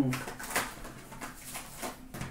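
Hockey card box and foil packs being handled: light irregular rustling, taps and clicks of cardboard and wrappers.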